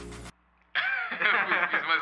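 Men's voices talking and laughing, after a brief cut to silence just after the start. The voices sound duller than the audio before the cut.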